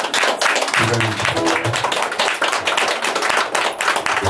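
Audience clapping at the end of a live song, a dense run of claps, with a few guitar notes ringing through about a second in.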